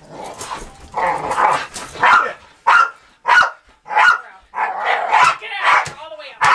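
Dog barking in a string of short, sharp barks, about one a second, at a burlap bite roll during hold-and-bark protection training.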